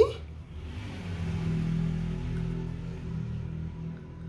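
Denim scraps being handled and slid over the table, a soft rustling hiss that builds about half a second in and fades near the end, with faint background music underneath.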